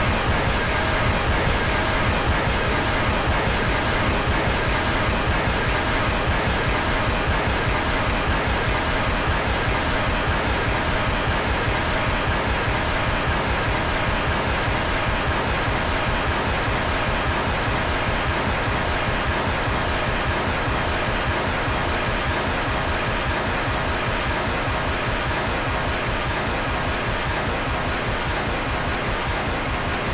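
Loud, steady static-like noise with faint music-like tones beneath it, easing slightly in level over the span.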